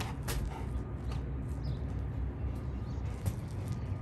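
Quiet outdoor ambience: a steady low rumble with a few faint clicks and a faint, brief bird call.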